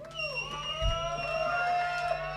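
Electric guitar left ringing through its amplifier: several sustained tones that waver and bend, over a steady low amp hum.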